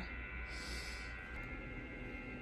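Quiet room tone with a steady faint hum, and a brief soft hiss about half a second in.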